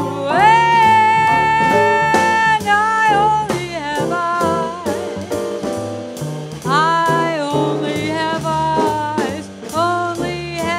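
A woman singing a jazz tune with a small combo, holding long notes with vibrato. Behind her are upright bass notes stepping along, electric keyboard and drums.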